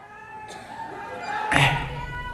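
A drawn-out, wavering pitched cry, then a sudden loud thud about one and a half seconds in, followed by a low rumble.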